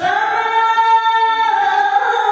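Melodic Qur'an recitation (tilawah) in a single high voice, amplified through a microphone, holding a long drawn-out note that steps down to a new pitch about halfway through.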